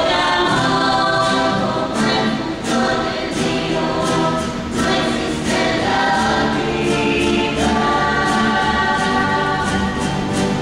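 A rondalla singing in chorus, young men's and women's voices together, over strummed Spanish guitars and a double bass. The full group comes in loudly right at the start and holds long sung notes over the regular strumming.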